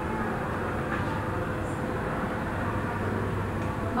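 Steady room noise: an even hum and hiss with a faint steady tone running through it.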